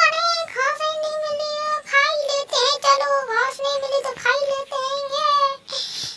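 Background music: a high-pitched voice singing a melody in long held notes with a wavering vibrato.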